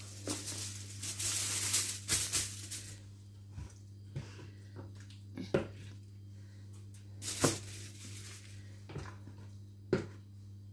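Aluminium foil crinkling and a large wet leaf rustling as they are handled and smoothed out by hand: a long rustle in the first few seconds, then a few short sharp crackles. A steady low hum runs underneath.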